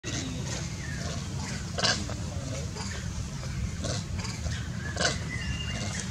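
Long-tailed macaque giving short cries, the two loudest just before two seconds and at about five seconds in, over a steady low rumble.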